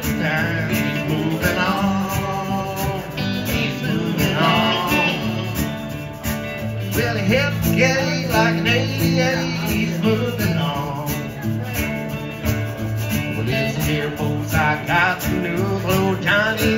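Live country band playing: a dobro (resonator guitar) and an electric guitar over a washboard scraped in a steady beat.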